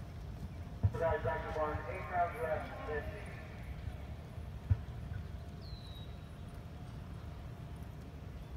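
Faint hoofbeats of a horse cantering on a sand arena, with a distant voice, likely over a loudspeaker, for about two seconds starting a second in.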